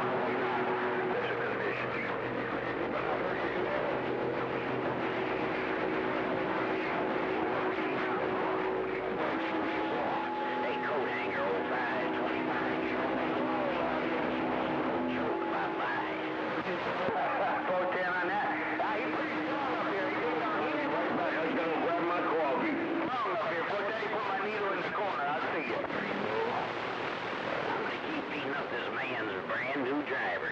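Crowded AM CB channel heard through the radio's speaker: steady static hiss with several stations keyed up at once, their carriers beating into steady whistling heterodyne tones over garbled, overlapping voices.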